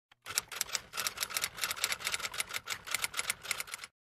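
A typewriter sound effect: a rapid, uneven run of key clicks that stops abruptly near the end, matching the title text appearing as if typed.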